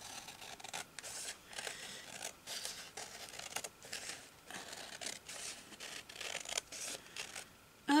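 Scissors cutting through a large sheet of paper: a run of short, irregular snips, stopping shortly before the end.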